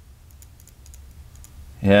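Faint, irregular small clicks and taps from the plastic trigger switch of a MIG welding gun being handled in the fingers. A man's voice comes in near the end.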